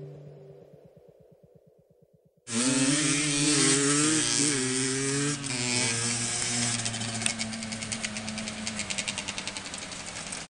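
Small two-stroke engine of an HM CRE Six Competition enduro motorcycle cutting in abruptly about two and a half seconds in, revving with a wavering pitch, then running on with a rapid, even pulsing over the last few seconds.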